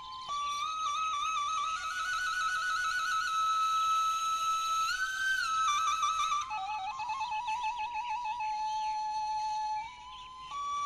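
Soundtrack music: a solo flute melody ornamented with quick trills. It climbs to a held high note about halfway through, then steps back down and settles on a lower note near the end.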